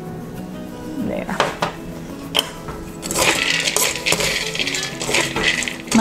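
A metal spoon stirring roasted peanuts in a steel wok: a few light clicks, then from about three seconds in a dense rattling scrape of nuts against metal. Soft background music plays throughout.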